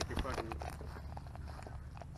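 Faint footsteps on dry crop stubble with small rustles, and a brief bit of quiet talk near the start.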